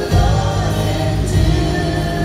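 Live worship music from a band on stage, with several voices singing together over strong bass and a beat about every 1.2 s, played loud through a hall's PA.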